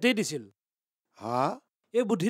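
Assamese conversation: a voice finishes a phrase, then after a short pause a single brief voiced sigh-like utterance about a second and a half in.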